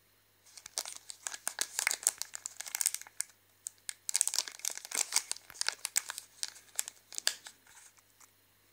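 Crinkly plastic wrapper of a glazed curd-cheese snack bar crackling as fingers turn and squeeze it, in two spells of dense crinkling with a short lull about three and a half seconds in.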